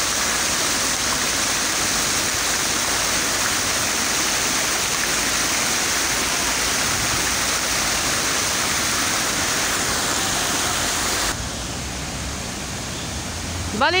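Fountain water jets splashing steadily onto a rock and into a shallow pool. The splashing drops suddenly to a quieter level about eleven seconds in.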